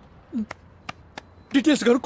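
Three short sharp clicks, about a third of a second apart.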